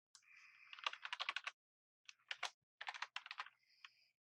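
Typing on a computer keyboard: two quick runs of keystrokes, the first about a second in and the second about two seconds in.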